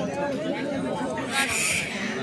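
Crowd of spectators talking and calling out over one another around a kabaddi court, with a brief louder burst about a second and a half in.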